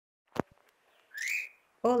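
A single sharp click, then a short rising whistle-like chirp lasting under half a second; a woman starts speaking just before the end.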